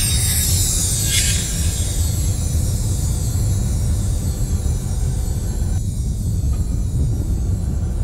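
Trailer soundtrack sound design: a deep, steady rumbling drone, with a whoosh about a second in and a high hiss that falls away over the first few seconds.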